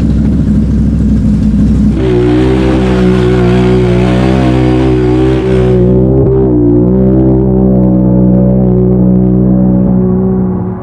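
Can-Am Renegade XMR 1000R ATV's V-twin engine running loudly at steady revs; its sound changes to a stronger, even drone about two seconds in, with a brief dip in pitch near the middle.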